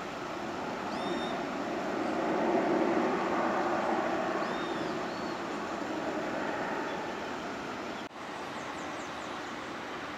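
Distant airliner jet engines running, a steady rumble that swells to its loudest about two to three seconds in and then slowly fades. A few short bird chirps come through about a second in and again around four to five seconds, and the sound drops out for an instant near the end.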